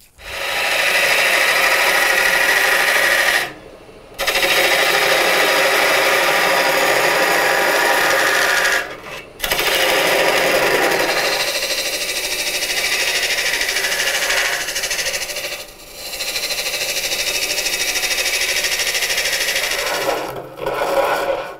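A lathe tool cutting into spinning basswood while hollowing a bowl: a steady scraping noise of shavings coming off. It breaks briefly three times, about four, nine and sixteen seconds in, where the tool lifts off the wood.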